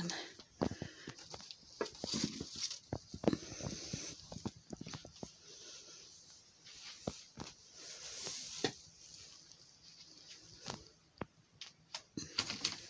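Irregular light knocks, clicks and rustling as someone moves through a cluttered room carrying a pair of boots, brushing against things and handling the camera. The rustles are busiest over the first few seconds and again around the middle.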